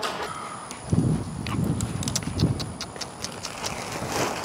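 Trash bags being hauled along pavement: plastic rustling with irregular knocks and clatter, heaviest about a second in.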